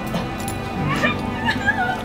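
A pug whimpering, high wavering whines in the second half, over background music.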